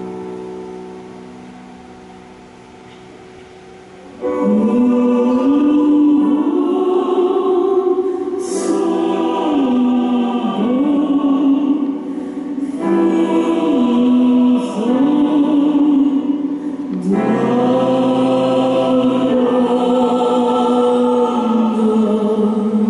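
A chord, a piano in the seconds before, dies away. Then, about four seconds in, a mixed choir comes in loudly, singing a slow melody over sustained chords in long phrases with short breaths between them.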